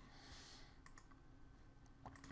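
Near silence: faint room tone with two soft computer-mouse clicks a little under a second in.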